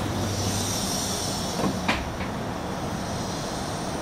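Steady low hum and hiss inside a Comeng suburban train carriage, with a single sharp clunk about two seconds in.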